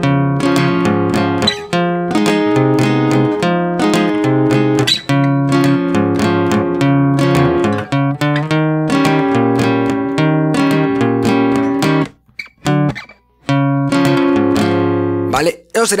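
Steel-string acoustic guitar, a Fender CD-60SCE, strumming the chords C#, Fm7 and D#7 in the regional Mexican bass-and-strum pattern: a bass note, then down-up strums. The playing breaks off for about a second and a half near the end, then resumes.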